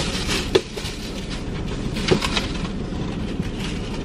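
A plastic trash bag rustling and crinkling as loose trash is gathered inside a car, with two light knocks about half a second and two seconds in.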